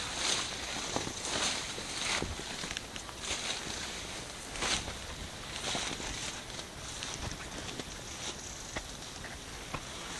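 Footsteps and rustling of leaves and twigs through dense woodland undergrowth, with irregular swishes about once a second.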